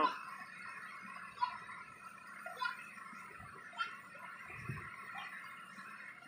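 Quiet background: a faint steady hiss with a few soft, short sounds scattered through it.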